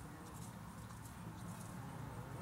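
Tennessee Walking Horse shifting its hooves on the floor of a stock trailer, giving a few separate knocks.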